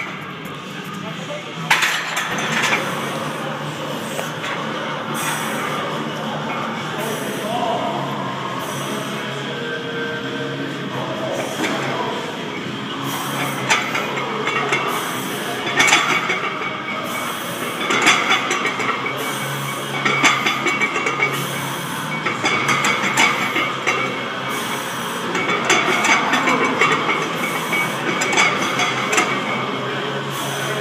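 Barbell plates clinking against each other with each back-squat rep, about one clink every two seconds in the second half, over background music and voices.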